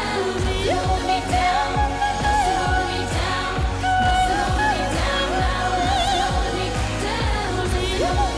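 Electronic pop song with a woman singing long, high notes with a wide vibrato in an operatic style, over a steady kick-drum beat of about two beats a second.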